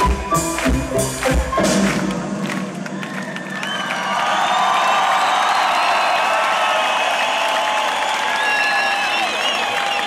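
A folk-metal band's live song ends on its last few loud drum-and-band hits in the first two seconds. From about four seconds in, a large concert crowd cheers and shouts.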